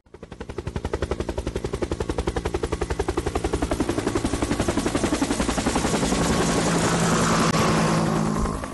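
Outro sound effect: a rapid, even pulsing that swells in loudness, with held tones coming in during the second half as it turns into closing music.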